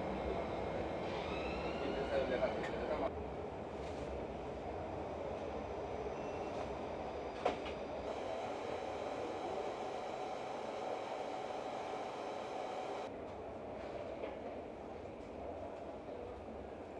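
Steady background hum of a public indoor space with indistinct voices. A faint rising squeal comes about a second or two in, and a single sharp click about seven and a half seconds in.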